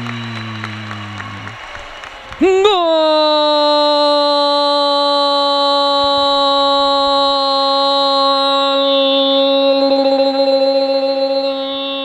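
A Spanish-language sports commentator's long, drawn-out "¡Gooool!" shout, calling a goal just scored. A falling voice fades out over the first second and a half. Then, about two and a half seconds in, the call starts on one steady held note that lasts about ten seconds.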